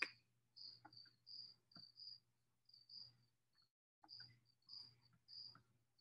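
Faint insect chirping, short high chirps repeating about twice a second with a brief pause around the middle, over a low hum and a few faint clicks.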